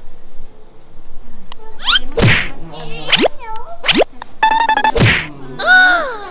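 A string of cartoon-style sound effects: quick whistling sweeps down and up in pitch, a buzzing springy boing, a loud whack-like sweep, and a short wavering musical tone near the end.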